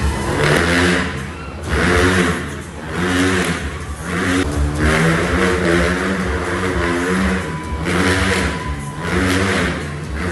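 Motorcycle engine revving inside a steel-mesh globe of death, its pitch climbing and dropping over and over as the bike circles the cage.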